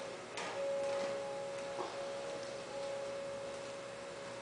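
Background music: a steady high held tone that breaks off briefly now and then, with a sharp click about half a second in and a small knock near two seconds.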